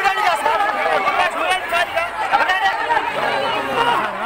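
An agitated crowd of men talking and shouting over one another in a scuffle, many raised voices overlapping with no single voice standing clear.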